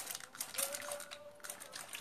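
A series of light, irregular clicks and taps from handling painting tools at the canvas.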